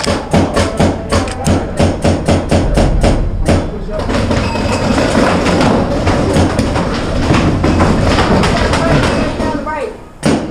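Paintball marker firing in quick succession, about four shots a second, for the first three and a half seconds, followed by a dense, steady din for the rest.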